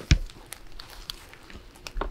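A sharp thump just after the start, then scattered light clicks and crackling rustles: objects being handled and picked up.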